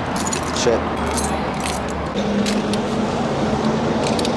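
A few short metallic jangles from the cavalry horse's chain reins and bridle fittings as it moves its head, over a steady low hum of traffic.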